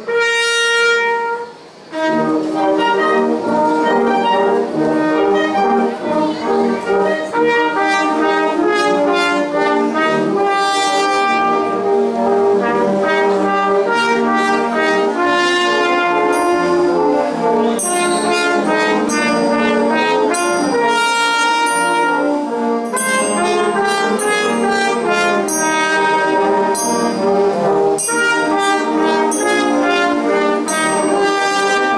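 Brass band with trumpets and sousaphones playing live. A single held note opens, breaks off about a second and a half in, and the full band comes in with sustained chords from about two seconds on.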